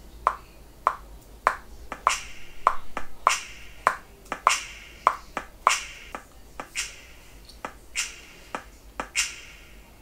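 Sparse programmed drum beat from a software drum kit in Logic Pro X: short clicky hits at an even pace of a little under two a second, with a finger-snap sample on every other hit.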